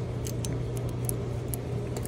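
A handful of light clicks and clinks as a water pump is worked back onto a 2.0 TSI engine by hand, over a steady low hum.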